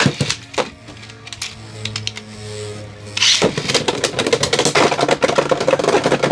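Beyblade X spinning tops in a plastic stadium: a sharp launch burst at the start, then from about three seconds in a dense, rapid clatter of clicks as the tops hit each other and the stadium, over background music.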